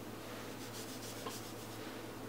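Small perfume atomizer spray bottle pumped once: a short, faint hiss of mist lasting under a second, with a light click of the pump, over a steady low hum.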